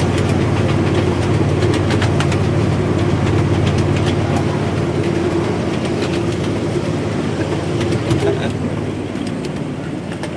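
A 7.5-inch-gauge miniature ride-on train running along its track through a wooden tunnel: a steady, loud drone with a hum, and scattered clicks of the wheels over the rail. The sound drops a little near the end as the train comes out into the open.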